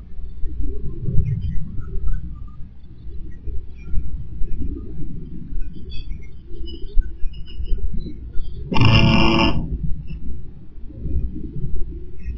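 A continuous low rumble, with a brief high-pitched squeal about nine seconds in.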